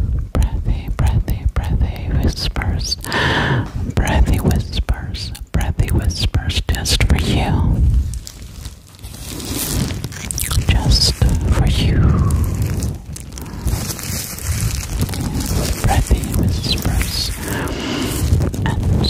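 Close, breathy whispering right into a condenser microphone's grille, with many small sharp clicks and a heavy low rumble of breath striking the mic.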